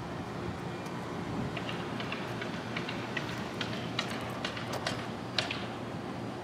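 A steady low engine hum with scattered light clicks and taps.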